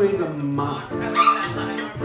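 A voice singing over strummed acoustic guitar, holding notes and sliding between them.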